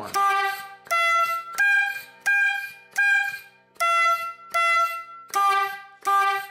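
1908 Testophone four-horn bulb horn tooting eight short blasts, about one every three quarters of a second. Each squeeze of the rubber bulb advances the inner drum to the next of its four brass horns, so the pitch changes from one blast to the next.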